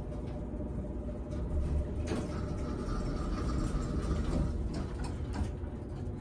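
ThyssenKrupp-modernized hydraulic elevator at its stop, a steady low rumble running throughout. The car doors slide open, with a steady hum from the door operator starting about two seconds in and lasting a couple of seconds.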